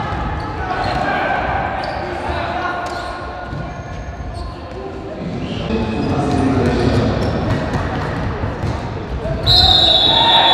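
Futsal game sounds in a large echoing sports hall: players' shouts and the ball being kicked and bouncing on the court. Near the end a referee's whistle blows sharply and holds, stopping play for a foul.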